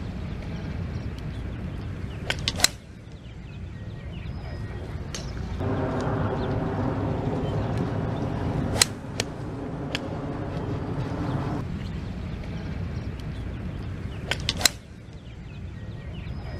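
A 3-wood striking golf balls off the turf, three sharp cracks about six seconds apart, each with a few fainter clicks just before it. Under them a low steady rumble runs throughout, and a droning hum of several steady pitches comes in for a few seconds in the middle.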